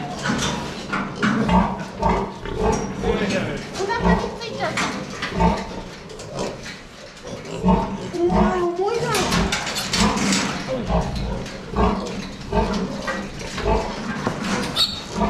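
Pigs grunting in a run of short, low grunts, one to two a second. A little past eight seconds in, a piglet squeals briefly in a wavering cry as it is caught and lifted by a leg.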